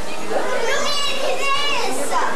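A young child's high-pitched voice calling out in rising and falling tones over a steady murmur of background chatter.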